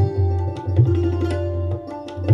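Tabla and santoor playing Hindustani classical music together. Deep bass-drum strokes from the tabla, some bending in pitch, run under the ringing struck strings of the santoor and sharp, quick tabla strokes.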